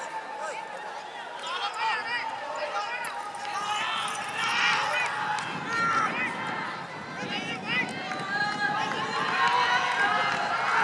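Several people's voices calling and talking, indistinct and overlapping, with no single loud event.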